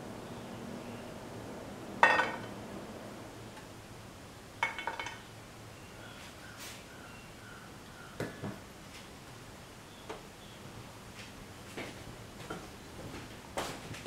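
Short clinks and knocks against a frying pan as chopped garlic goes in with onions heating in oil: about five separate hits, the loudest about two seconds in.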